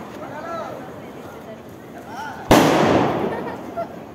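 A firecracker goes off with one sudden loud bang about two and a half seconds in, its sound trailing away over a second or so. Beneath it, the steady fizzing crackle of a hand-held sparkler.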